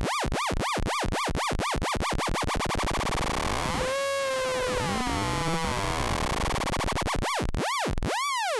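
Tiptop Audio ATX1 analog oscillator frequency-modulated by a second ATX1 running as a sine-wave LFO, its pitch swooping up and down in a repeating wobble. The rate is being turned on the LFO: quick swoops that speed up over the first few seconds, a steadier tone with slow glides in the middle, then slow, wide swoops near the end.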